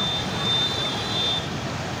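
Shallow floodwater rushing and splashing across a street as traffic pushes through it. A thin, steady high tone runs over it and stops about one and a half seconds in.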